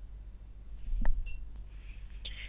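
A steady low electrical hum, with one short sharp click about halfway through and a faint hiss near the end.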